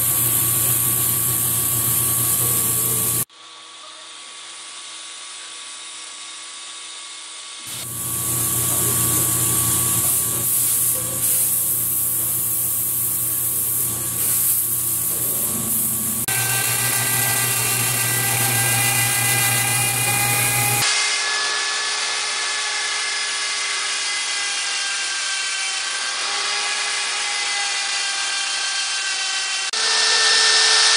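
Tool-post grinder on a metal lathe grinding a ring held in the chuck, throwing sparks: a steady motor whine mixed with grinding noise. The sound comes in several clips joined by abrupt cuts and drops much quieter for a few seconds starting about three seconds in.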